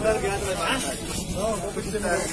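Speech: men's voices talking in a crowd.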